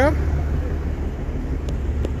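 Steady low rumble of road traffic on a bridge, with engines running in slow, heavy traffic.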